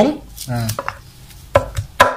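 Cleaver chopping raw beef on a thick round wooden chopping block: several sharp knocks, most of them in the second half.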